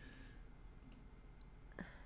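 Near silence with a few faint, short clicks and a slightly louder one near the end.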